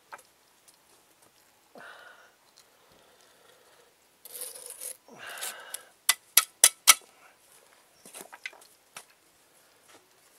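Steel brick trowel scraping mortar against brick, then four quick sharp taps about six seconds in, with a few lighter taps a couple of seconds later.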